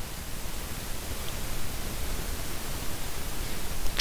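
Steady, even hiss of background noise with no other distinct sound.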